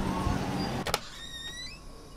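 A steady low background rumble, cut off by a sharp click about a second in, followed by a brief high-pitched squeak that rises in pitch.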